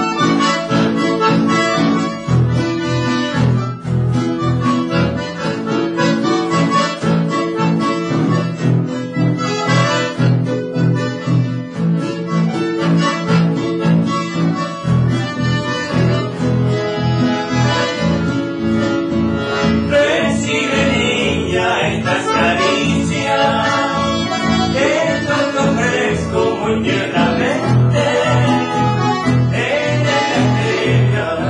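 Accordion and acoustic guitars playing together live, a continuous tune with a steady strummed beat.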